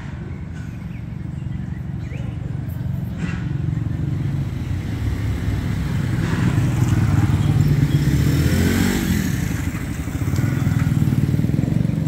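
A motor vehicle's engine running as it passes along the street, building to its loudest about eight to nine seconds in and then easing off.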